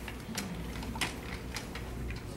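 Room tone with a low steady hum and about three light clicks or taps spread across two seconds.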